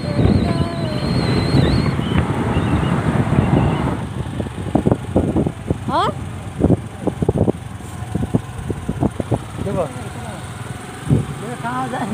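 Wind buffeting the microphone and a motorbike engine running while riding. The wind noise is heavy for the first four seconds, then drops, leaving short irregular thumps and brief bits of voices.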